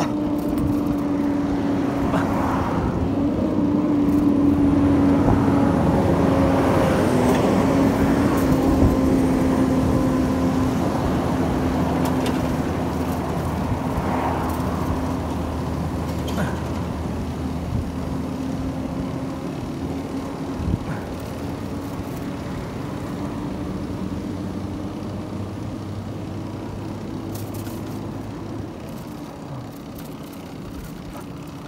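Heavy truck's diesel engine running close by, a steady drone that builds over the first few seconds and then fades slowly as the truck draws ahead.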